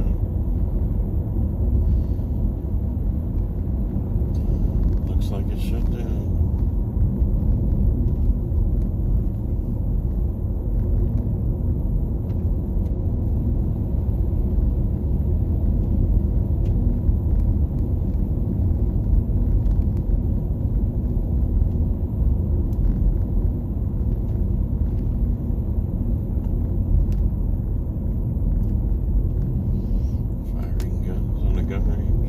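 Steady low road rumble of a car driving at speed, heard from inside the cabin: tyre and road noise with no change in pace.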